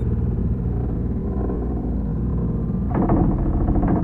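Dark electronic music: a low, rumbling synthesizer drone, joined about three seconds in by a denser, brighter layer.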